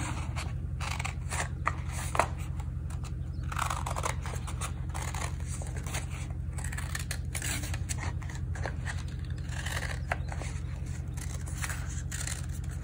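Scissors cutting through a sheet of crayon-shaded paper in short, irregular snips, over a steady low hum.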